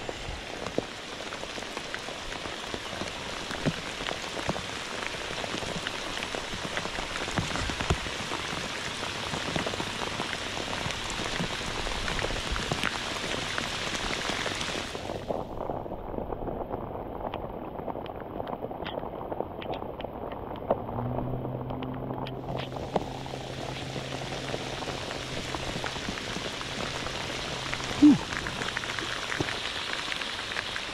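Heavy rain falling steadily on lake water and the boat, a constant hiss. The sound goes muffled for several seconds midway. A low steady hum joins it for the last third, and a single knock comes near the end.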